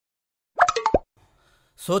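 A quick run of sharp pops ending in a falling plop, lasting about half a second, starting about half a second in and surrounded by dead silence.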